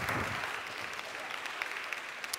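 Congregation applauding, the clapping slowly thinning out.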